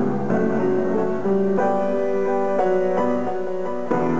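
Grand piano played in a slow passage of sustained chords, changing every half second to a second.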